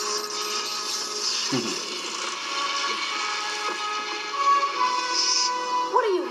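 Music from a TV talent show's intro montage, with a sharp downward-gliding sound effect about a second and a half in.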